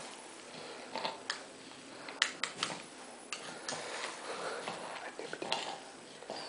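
A baby being spoon-fed: a scattering of light, sharp clicks from the spoon and the baby's mouth, with some soft smacking and snuffling in between.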